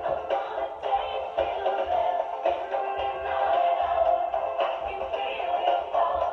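A pop song playing, a sung vocal over a steady beat: the 1989 number-one chart hit.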